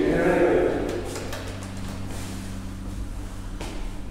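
A woman's voice for about the first second, then a steady low electrical hum with a few faint ticks.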